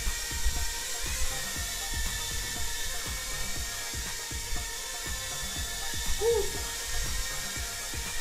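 A mini quadcopter's tiny brushed motors and propellers buzzing steadily as it hovers, a thin high whine over a hiss, with scattered soft knocks.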